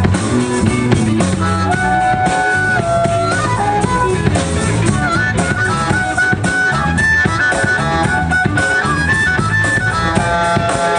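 Live hill country blues: a harmonica played into a microphone carries the melody in held notes that step up and down, over electric guitar and a steady beat.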